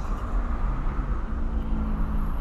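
Volkswagen Polo Sedan's engine idling, a steady low rumble heard from inside the car's cabin.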